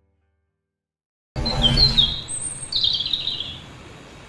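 Silence, then about a second and a half in, birds suddenly start chirping in short, quick calls over a low rumbling background.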